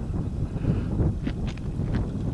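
Light breeze buffeting the microphone: an uneven low rumble that rises and falls.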